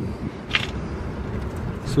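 Low, steady outdoor background rumble with one short hiss about half a second in.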